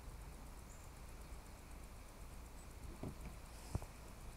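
Quiet outdoor background with a steady low rumble, then a single short, light knock near the end as a stemmed beer glass is set down on a table.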